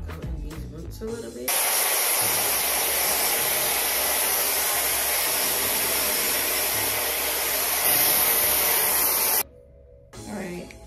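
TYMO AirHype Lite high-speed hair dryer blowing a loud, steady rush of air. It starts abruptly about a second and a half in and cuts off suddenly shortly before the end.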